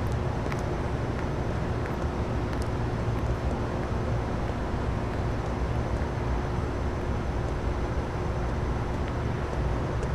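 Steady low rumble of distant city traffic with a faint constant hum.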